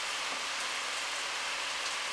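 A steady, even hiss with no other event in it.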